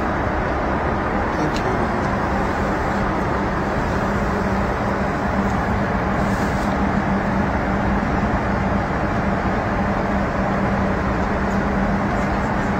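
Steady airliner cabin noise: an even rush of engine and air noise with a constant low hum.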